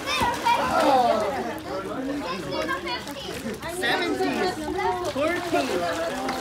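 A crowd of children's and adults' voices shouting and talking over one another as kids play in a swimming pool.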